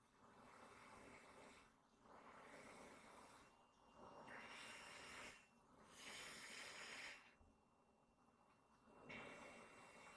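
Faint breathing through a tracheostomy tube and its corrugated breathing hose: about five soft, airy breaths, each over a second long, roughly every two seconds, with a pause of over a second near the end.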